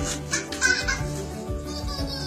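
Background music with a toddler's short excited giggles over it.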